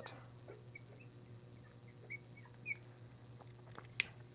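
Marker squeaking on a glass lightboard while a word is written: faint short chirps, with a few light taps of the tip on the glass.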